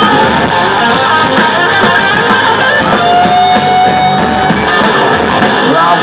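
Live hard rock band playing an instrumental passage: distorted electric guitars, bass and drums, loud and dense, with a single note held for over a second about halfway through.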